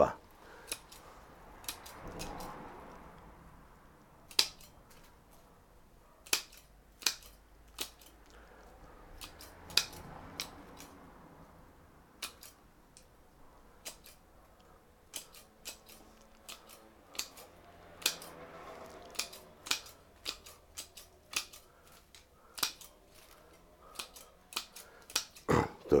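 Pruning shears cutting twigs and new shoots on a Chinese elm bonsai: a sharp snip with each cut, coming irregularly, roughly once a second.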